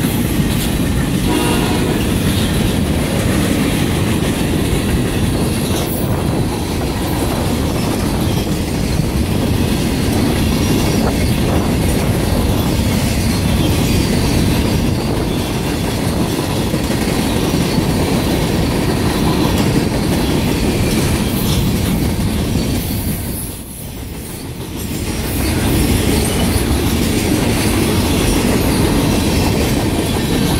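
Freight train's boxcars and tank cars rolling past close by: a steady, loud rumble and rattle of steel wheels on the rails, clicking over the rail joints. The noise eases briefly a little before two-thirds of the way through, then comes back.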